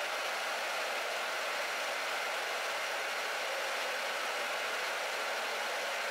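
Steady, even rushing hiss of water flowing through the inline pipe turbine's pipework, with no low rumble and no change throughout.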